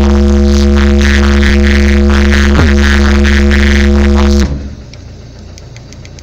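Car audio subwoofer (an 800 W RMS Eros) playing a very loud, steady deep bass tone that sags in pitch briefly about two and a half seconds in, then cuts out suddenly about four and a half seconds in, leaving only a quiet hiss with faint ticks. The cut-out is the system losing power from too little battery.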